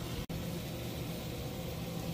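Steady low hum and hiss of a running machine, such as a fan or air conditioner, with no other events; it drops out for an instant about a quarter second in.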